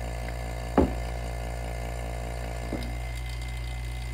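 Small electric vacuum pump running steadily with a low hum, pulling vacuum through a hose on an automatic-transmission valve body for a leak test. A sharp knock about a second in and a fainter one near three seconds.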